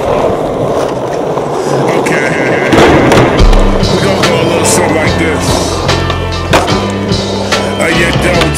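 Skateboard wheels rolling over paving, with sharp board pops and landing clacks from tricks. About three seconds in, a hip-hop track with a deep stepping bass line comes in under the skating.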